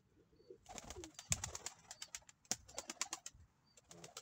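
A domestic pigeon giving a soft, low coo, then a run of sharp, irregular clicks and flutters lasting about two and a half seconds. The clicks fit its wings flapping as it hops off the ground.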